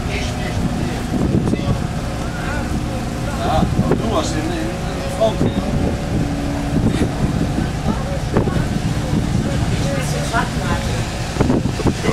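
Steady low rumble of a dive boat's engine, with people talking in the background.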